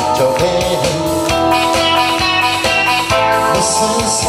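Harmonica played into a microphone through a PA, holding chords and a melody over an amplified backing track with a steady beat.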